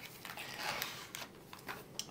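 A knife's box being opened by hand: rustling and scraping of the packaging, with a few small clicks in the second half.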